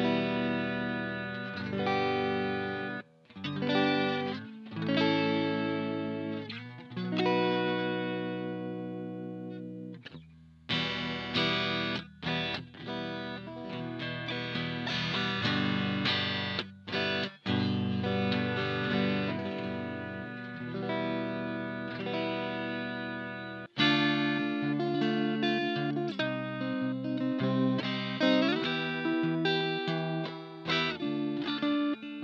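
A Donner DST-152R Strat-style electric guitar played through a Donner mini guitar amp: ringing chords with short breaks between them, then a quicker run of picked notes from about two-thirds of the way in.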